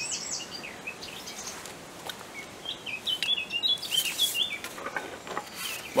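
Small songbirds chirping in short, quick phrases, busiest in the middle of the stretch, with a few faint clicks.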